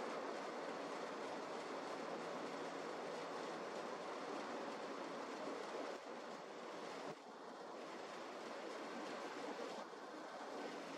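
Airbus A350-1000's Rolls-Royce Trent XWB-97 turbofans heard from the ground on final approach: a faint, steady, even jet rumble and hiss.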